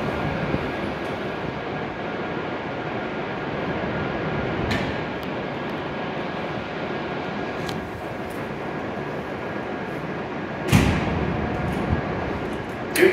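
Steady mechanical hum of a stationary E7-series Shinkansen standing at the platform, with a few faint clicks and a sudden loud clunk about eleven seconds in.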